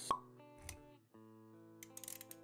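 Intro music of held notes with a sharp pop sound effect just after the start, the loudest thing heard, and a short low thump a little over half a second in. The music drops out briefly about a second in, then resumes with a few light clicks near the end.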